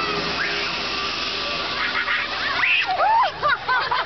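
A spray of liquid hissing and splashing over people. From about halfway through it is joined by a quick run of short, high, squeaky rising-and-falling cries.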